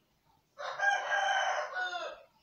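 A single long, pitched animal call, loud and lasting about one and a half seconds, starting about half a second in.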